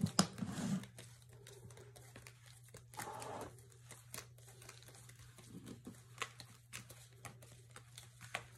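Faint rustling and light clicks of paper cash envelopes being handled and laid down on a wooden table, over a steady low hum.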